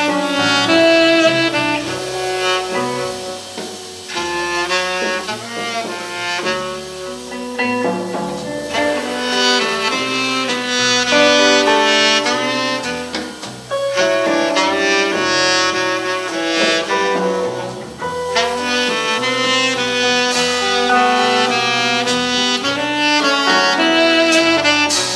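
Live jazz: a tenor saxophone plays an improvised line in phrases of quick running notes, with brief breaths between phrases. Electric guitar and a bass line move underneath it.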